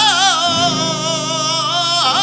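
Male flamenco singer singing a taranto in a held, melismatic line whose pitch wavers and turns, over a flamenco guitar accompaniment.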